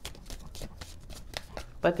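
Tarot deck being shuffled by hand: a run of irregular soft card clicks and slaps.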